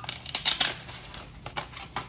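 Stiff paper plates rustling and scraping against each other as they are handled and pulled from a stack, with a loud crackly burst about half a second in and a few shorter clicks and scrapes near the end.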